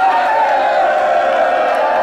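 A congregation calling out together in one long, sustained response shout, held at a steady pitch.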